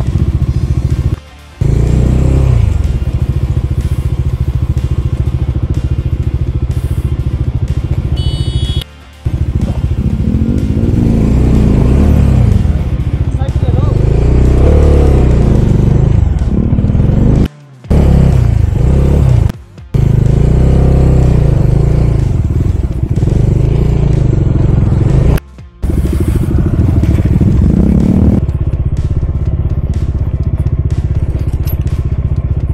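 Bajaj Dominar 400 motorcycle engine heard close up, revving up and down again and again while riding a rough dirt trail. The sound breaks off suddenly for a moment several times.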